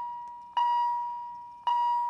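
Philips HeartStart MRx defibrillator-monitor beeping: a single high tone struck twice, about a second apart, each strike fading away before the next.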